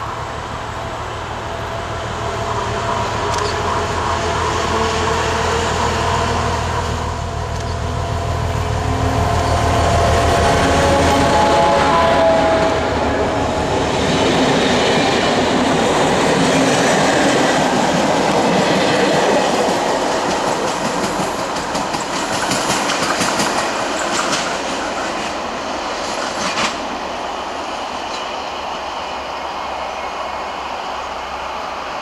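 ČD class 749 'Bardotka' diesel locomotive with a six-cylinder engine pulling away with a loud, low engine rumble. After about ten seconds the rumble drops away as the double-deck coaches pass, wheels clicking over the rail joints, and the sound eases as the train moves off.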